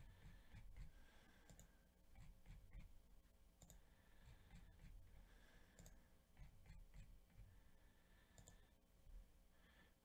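Faint computer mouse clicks, a handful of single ticks a second or so apart, over near-silent room tone.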